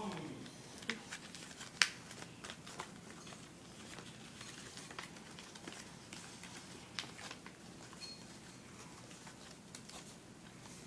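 Faint rustling and crinkling of a folded paper plane being handled and its fuselage taped together, with scattered small clicks, the sharpest about two seconds in.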